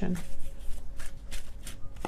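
A deck of tarot cards being shuffled by hand, a run of quick, irregular rustling strokes.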